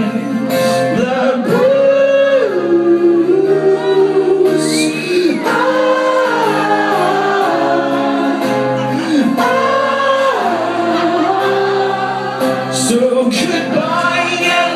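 Live solo performance: a man singing with long, gliding held notes over a strummed acoustic guitar, picked up in a club hall.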